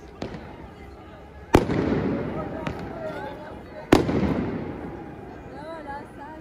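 Fireworks going off: two loud bangs, about a second and a half in and near four seconds in, each followed by a long rolling echo that fades away, with a couple of smaller pops. Crowd voices carry on underneath.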